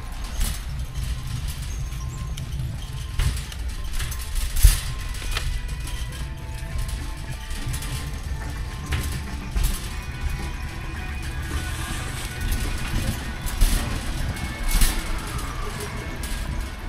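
Metal shopping cart rolling over a concrete floor: a steady low rumble with scattered rattles and knocks from the wire basket, over faint background music.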